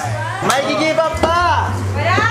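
Excited voices calling out over background music with a steady, stepping bass line.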